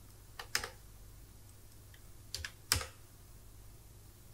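Computer keyboard keystrokes in two short groups: a couple of keys about half a second in, then a few more between two and three seconds in.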